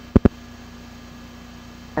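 Two sharp clicks just after the start, then a steady low electrical hum. This is the dead air between two TV commercials on an old VHS recording of a broadcast, where the picture breaks up into static.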